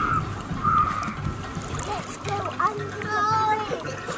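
Water splashing as a child swims strokes across a swimming pool, heard close to the water surface. High-pitched voices or music sound over it in the second half.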